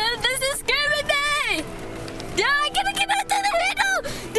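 A high-pitched human voice squealing and exclaiming in short bursts, without clear words, as a vehicle lurches over a steep snow mound.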